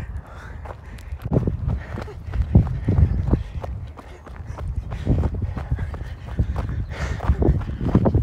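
Footsteps on a dirt and gravel track, carried with the moving camera, with irregular low thumps and rumble throughout.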